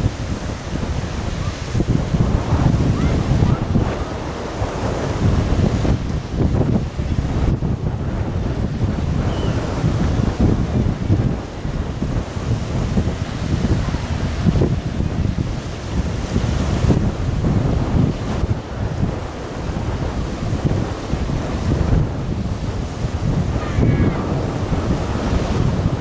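Strong, gusty wind buffeting the microphone, a loud low rushing that swells and eases every second or two, over the wash of a choppy sea.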